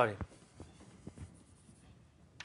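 A man says "sorry" at the start, then a few faint, sparse taps of chalk on a blackboard.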